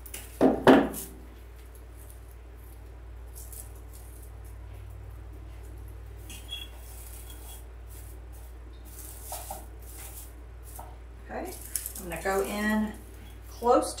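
Wire cutters snipping through the wired stem of an artificial pine pick: two sharp snips within the first second. Then soft, scattered handling sounds of the plastic pine as the short pieces are tucked into the candle ring.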